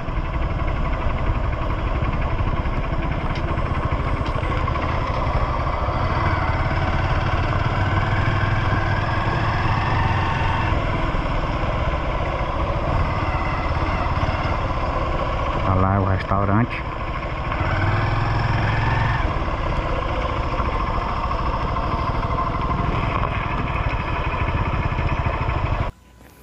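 Motorcycle engine running at low riding speed, with wind rushing over the helmet-mounted microphone; the engine note rises a little now and then as the throttle opens.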